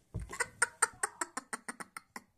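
A young girl laughing in a rapid run of short 'ha' bursts that speed up towards the end.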